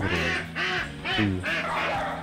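Ducks quacking, four short calls, over soft background music.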